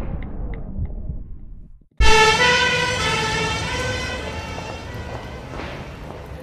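A low rumble, then a sudden, very loud vehicle horn blast about two seconds in that fades slowly over the next few seconds. It is used as a jump scare.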